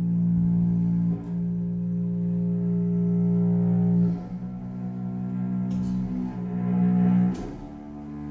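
Microtonal contemporary chamber music: cello and double bass holding long, low bowed notes that change every few seconds.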